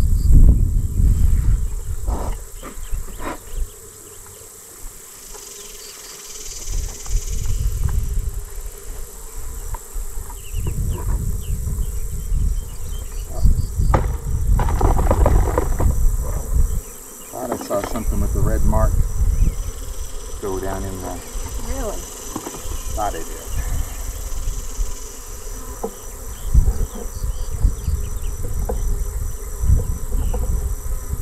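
A swarm of honeybees buzzing around an open hive as bees are shaken out of a wooden hive box into the hive body below. The buzz sits over a low rumble that rises and falls, with a few knocks from the box.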